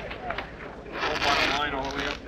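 Faint, indistinct voices of people around the vehicle. From about a second in there is also a hissing noise.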